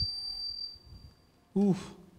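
Microphone feedback from the handheld mic and PA: a thin, steady, high-pitched whine that fades away about a second and a half in. It is sharp enough to draw an "oof" from the man holding the mic.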